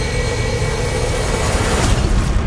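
Film-trailer sound design: a dense, loud, engine-like roar over a low rumble that swells and brightens toward the end, building into a hit.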